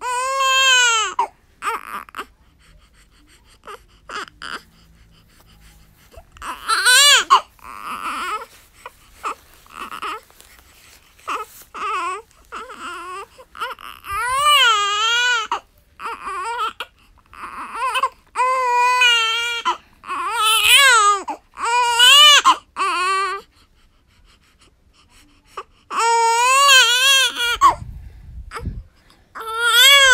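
Young infant crying in a series of wailing bouts with quiet gaps between them, each cry wavering up and down in pitch.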